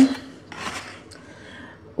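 Cardboard pizza box being opened: a faint, brief rub and scrape of the lid about half a second in, then quiet handling.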